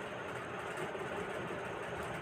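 Steady, even background noise (room tone) with no distinct events.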